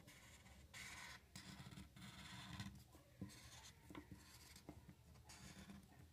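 Faint felt-tip marker rubbing across paper, drawn as a series of separate short strokes with brief pauses between them, each line traced in turn.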